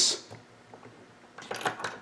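Light clicks and taps of a plastic EC3 connector and small tools being handled against a steel bench vise, starting about one and a half seconds in after a quiet second.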